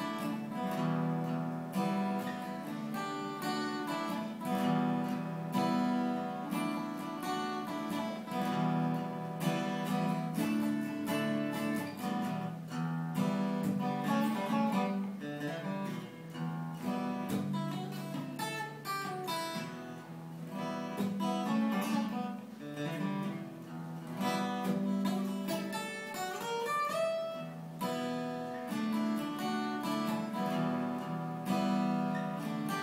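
Solo acoustic guitar played through an instrumental break with no singing: steady strummed chords, with a few picked single-note lines around the middle and near the end.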